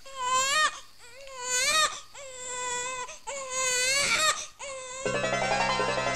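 An infant crying in four separate cries, each rising in pitch at its end. Film score music with keyboard notes comes in about five seconds in.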